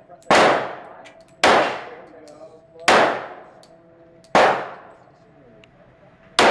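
Pistol shots fired in an indoor shooting range: four sharp shots about one to one and a half seconds apart, each followed by a fading echo off the range walls.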